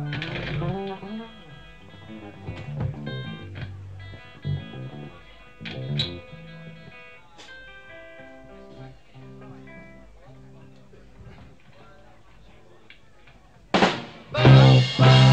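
Electric guitar and bass guitar picking out scattered single notes between songs on a live 1960s bootleg recording, fairly quiet. Just before the end the full band comes in with a loud hit.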